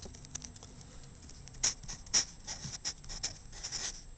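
Marker pen writing a short word on paper: a quiet start, then a run of short scratching strokes from about a second and a half in.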